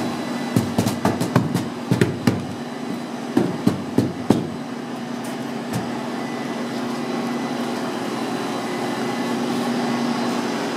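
A flurry of sharp knocks and taps in the first four seconds or so, from hands pressing and patting a foil-faced foam insulation board against its wooden frame, over a steady machine hum that runs on throughout.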